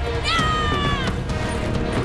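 A woman's shrill battle yell: a sharp rise into one long, falling wail lasting under a second, over background music.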